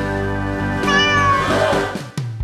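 A domestic cat meowing once, about a second in, over steady background music.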